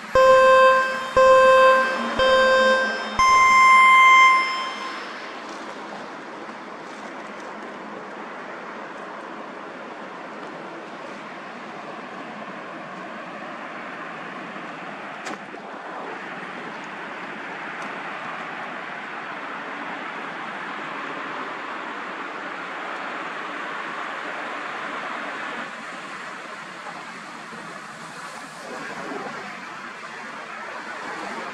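Three short electronic beeps followed by one longer beep an octave higher, in the pattern of a time signal. Then a steady rushing noise runs on.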